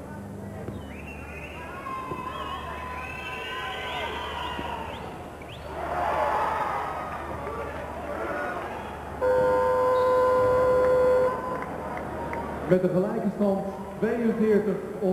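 Basketball arena crowd shouting and cheering, swelling about six seconds in, then a loud electronic game buzzer sounding one steady tone for about two seconds and cutting off abruptly.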